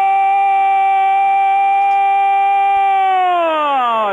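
Football radio commentator's long, drawn-out shout of "¡gol!", held loud on one steady high note, then sliding down in pitch over the last second.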